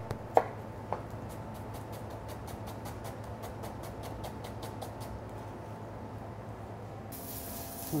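Chef's knife rapidly dicing an onion on a plastic cutting board, in quick even strokes at about four a second. Near the end a steady hiss starts as the diced onion goes into a pan of hot oil and begins to sizzle.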